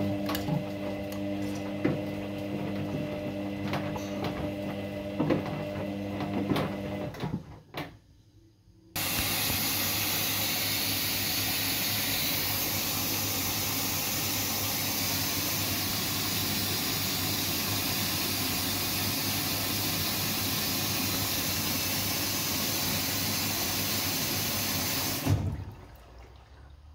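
Kogan front-loading washing machine on a quick wash: the drum motor hums steadily while the wet load tumbles with small knocks, then stops about seven seconds in. After a short pause, a steady rush of water runs through the machine for about sixteen seconds and cuts off near the end.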